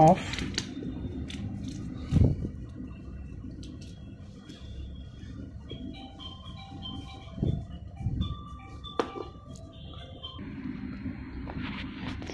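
Handling of a plastic fish-food tub while its lid's sticker seal is peeled off: low rubbing and a few knocks. A faint simple tune of short steady notes plays in the background from about three seconds in until near the end.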